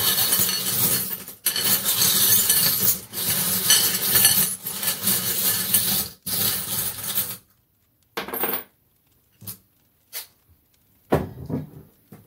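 Small metal charms being shaken and stirred by hand in a metal bowl: a dense, continuous jingling rattle for about seven seconds with short breaks. It is followed by a few separate short clinks and taps as charms are set down.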